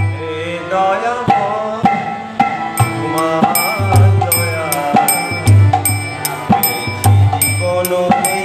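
A man singing a Bengali devotional bhajan to his own harmonium, whose reeds hold sustained chords under the voice. A steady tabla-style drum beat and sharp regular clicks keep time.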